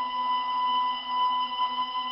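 Background music: a chord of several steady held tones, with no beat.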